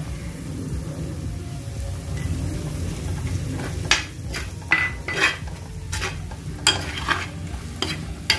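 Masala of chilli powder, onions and green chillies frying in oil in a black stone pot, a low steady sizzle. From about four seconds in, a steel spoon stirs and scrapes against the pot in a run of sharp scrapes and clinks, one with a brief metallic ring.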